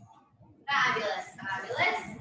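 A woman talking, her voice starting just under a second in after a quiet moment.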